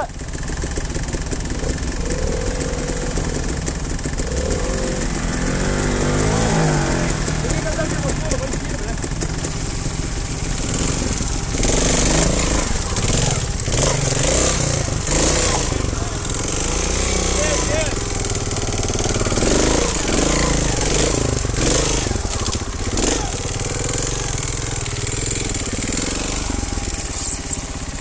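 Trials motorcycle engine running at low revs, the revs rising and falling repeatedly as it is ridden over rocky ground. Through the middle there are many short knocks and clatters.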